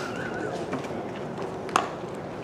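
Outdoor ballfield ambience with a steady background murmur, a wavering whistle-like tone at the start, and a single sharp crack near the end.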